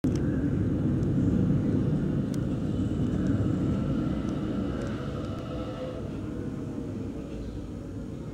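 Low, steady rumbling noise that slowly fades, with a few faint clicks.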